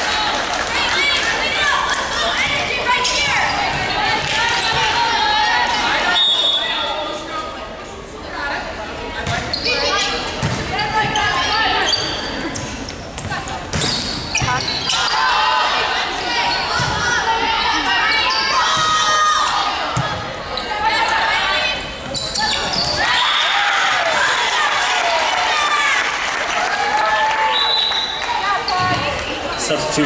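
Volleyball match sounds in a gymnasium: the ball struck and bouncing on the hardwood floor, with players calling out and spectators cheering, echoing in the hall.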